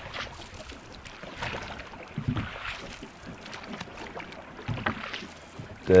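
A wooden rowing boat being rowed: water splashing around the oars, with a few faint knocks of the oars in their wooden thole pins.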